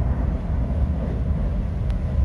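Interior running noise of a Stadler ETR 350 (FLIRT) electric train at speed in a tunnel: a steady low rumble coming up from the bogies, with air leaking in around the door.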